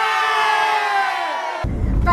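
A group of voices cheering together in one long, slowly falling "yay", lasting about a second and a half. The vehicle's low road rumble is cut away under the cheer and comes back near the end.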